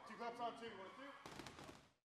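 Faint voices of people in a training gym, then a quick run of sharp knocks about a second and a quarter in, before the sound fades out near the end.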